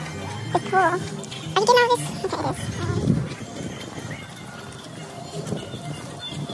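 Background music with people's voices, including two short, high, wavering vocal calls in the first two seconds.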